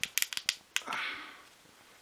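A quick run of about six sharp plastic clicks and rattles as an opened slot-car hand controller's trigger and casing are handled, followed by a soft brief rustle.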